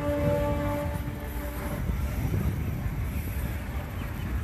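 A horn sounds one steady note for about two seconds, over a steady low outdoor rumble.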